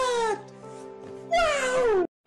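Two long wailing calls, each sliding down in pitch, over music with held tones. The second call begins a little past halfway.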